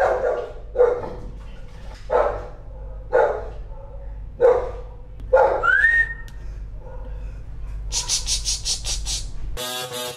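Neighbourhood dogs barking, single barks about once a second, six in all. About six seconds in comes a short rising whistle, and near the end a fast rhythmic high-pitched sound, over a steady low hum.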